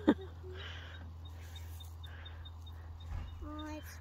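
Soft rustling of soil and roots as a hand roughs up a plant's root ball for planting, over a steady low hum. A voice sounds briefly near the end.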